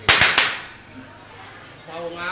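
Three sharp percussive cracks in quick succession within about half a second, with a brief ringing tail, a loud stage accent.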